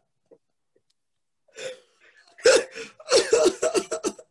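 A man laughing hard. After a near-silent start comes a breath, then a loud burst, then a quick run of short gasping bursts of laughter in the second half.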